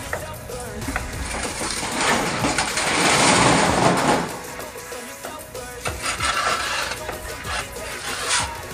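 Background music, with a loud scraping rasp of a mason's steel trowel working mortar on a concrete hollow-block wall from about two seconds in, lasting some two seconds, and a fainter scrape near the end.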